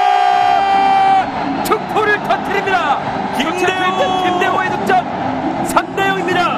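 A TV football commentator's long, drawn-out goal cry, held on one high note until about a second in. It is followed by excited shouting over a noisy stadium crowd.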